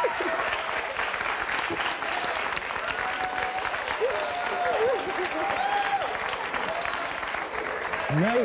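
Studio audience applauding steadily, the clapping running on without a break.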